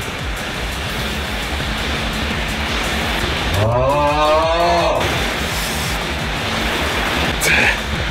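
A man's long, wavering yell about three and a half seconds in, over background music with a steady low beat.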